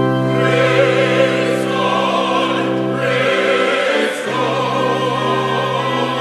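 Church choir singing with pipe organ accompaniment. The organ holds steady chords throughout, and the choir's voices come in about half a second in.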